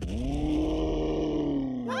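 Cartoon dinosaur roaring: one long, steady roar that sinks slowly in pitch, over a low rumble. A short rising cry cuts in just at the end.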